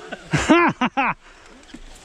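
A man's brief vocal outburst of three quick syllables about half a second in, then quiet outdoor background.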